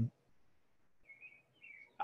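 Two faint bird chirps, short and wavering, about a second in and again just before the end, over quiet room tone.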